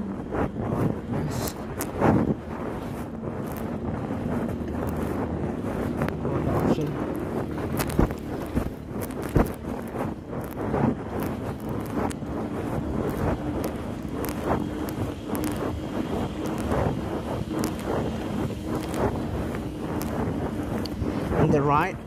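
Wind buffeting a chest-mounted phone microphone while a mountain bike is ridden over pavement, with frequent small clicks and knocks from the bike and from the phone rubbing on the rider's shirt.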